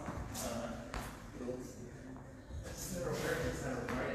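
Indistinct talking in a large room, with a few soft knocks.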